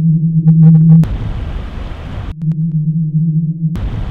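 Sound-design soundtrack: a steady low droning tone, with a few short pulsing tones over it in the first second. It is cut off abruptly and alternates twice with stretches of loud rushing, rumbling noise.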